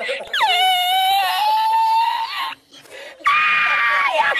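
Two long, high-pitched vocal screams: the first swoops down in pitch and is held for about two seconds, then after a short break a second one starts about three seconds in and is held steady.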